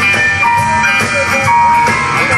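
Live rhythm-and-blues band playing an instrumental passage: drum kit keeping a steady beat under held keyboard notes, bass and bending guitar lines, with no vocal.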